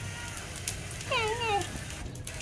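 A kitten meows once, about a second in: a short wavering call that dips and rises before falling away.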